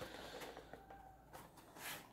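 Near silence, with a few faint, short rustles of EVA foam armor pieces being handled, mostly in the second half.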